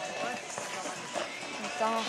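Horse cantering on sand footing, its hoofbeats muffled, under spectators' voices; a man swears near the end.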